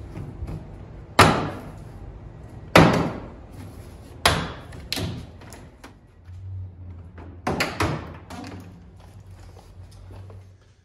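Plastic push-pin rivets popping out one after another as the interior trim panel of a Mercedes Sprinter's rear door is pulled off by hand: five or six sharp pops spread over about eight seconds.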